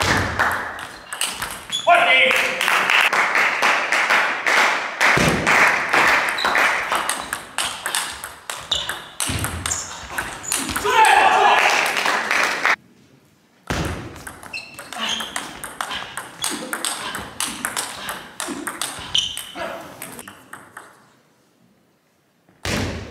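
Table tennis rallies: the ball clicking sharply off the bats and the table in quick back-and-forth strokes, with voices in a large hall. A short silent break comes about halfway, and the sound fades out just before the end.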